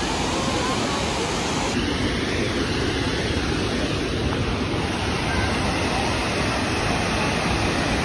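Steady roar of Burney Falls, a broad waterfall pouring into its pool: an even, unbroken rushing noise.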